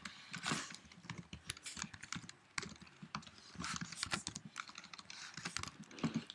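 Typing on a computer keyboard: a fast, irregular run of keystrokes.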